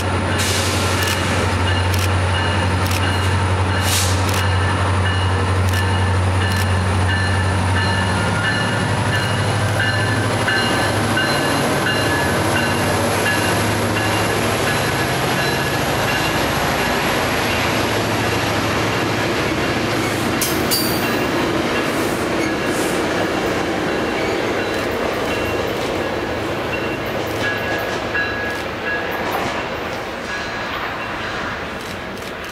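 Metrolink bilevel passenger train passing on the far station track: a steady rolling rumble of wheels on rail, with a low hum strongest in the first eight seconds or so and a few clicks about two-thirds of the way through. It fades off near the end as the train clears.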